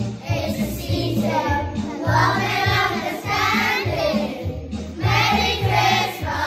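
A class of young children singing together as a choir over an instrumental backing track with a steady bass line.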